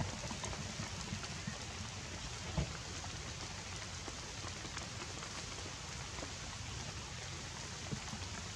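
Steady rain falling on foliage, a continuous hiss with scattered drips and one louder tap about two and a half seconds in.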